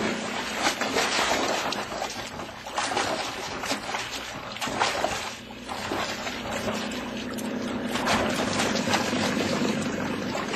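Radio-drama sound effect of water splashing and sloshing: a struggle in the sea after a man goes overboard from a boat. A steady low hum runs underneath.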